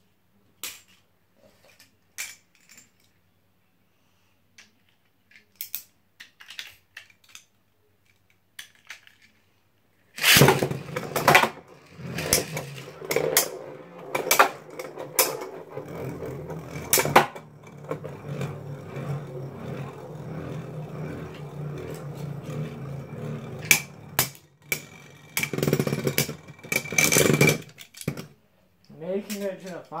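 Light scattered clicks, then two Beyblade Burst tops launched into a clear plastic stadium about a third of the way in. They spin and rattle against the plastic with repeated sharp clashes, and the sound stops shortly before the end.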